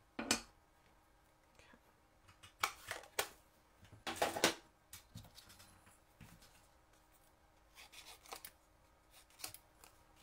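Short rustles and light taps of card pieces and a clear acrylic stamping block being handled on a craft work mat, the loudest just after the start and about four seconds in.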